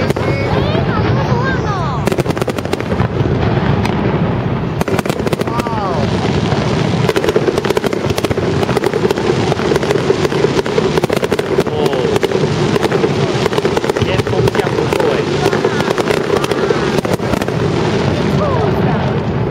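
Aerial fireworks bursting in a rapid, continuous run of bangs and crackles, with voices going on underneath.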